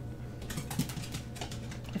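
Typing on a computer keyboard: a quick run of key clicks starting about half a second in, over a steady low hum.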